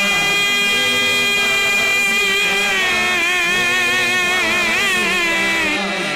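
A male naat reciter holds one long sung note into a microphone. The note is steady at first, then wavers up and down in an ornamented run from about halfway, and breaks off near the end.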